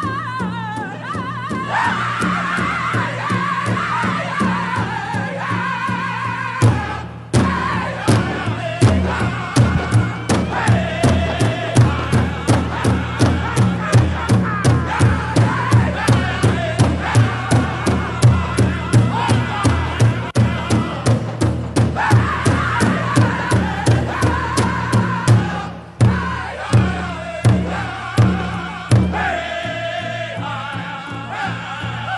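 Pow wow drum group singing in high, wavering voices over a steady beat on a large bass drum. The drum strokes grow loud about seven seconds in after a brief stop, run evenly through most of the song, and thin out near the end.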